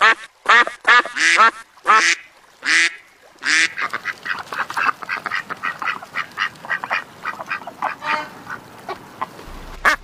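Domestic ducks quacking: a run of loud, drawn-out quacks in the first few seconds, then many shorter, quieter quacks in quick succession, about four a second. A single sharp knock just before the end.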